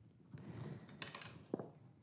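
Lab glassware handled on a bench: soft rustling, a single light ringing glass clink about a second in, then a small knock near the end.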